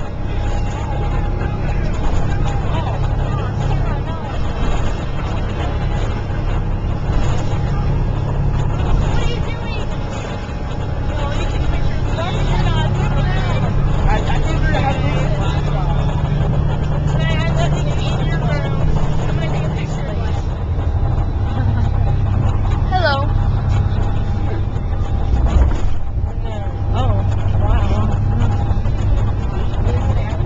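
A motor coach heard from inside its cabin while driving, with a steady low rumble of engine and road. Indistinct passenger voices run over it.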